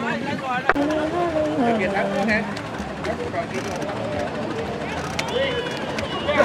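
Several people talking and calling out at once, voices overlapping, with a sharp knock about two thirds of a second in.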